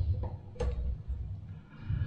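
Pin spanner wrench working the metal top cap of a waterfall faucet loose: low rumbling handling noise with one sharp click a little over half a second in.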